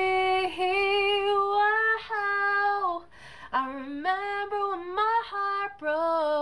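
A woman singing unaccompanied, holding one long note that bends upward, then after a brief pause about three seconds in, a run of shorter sung notes stepping up and down in pitch.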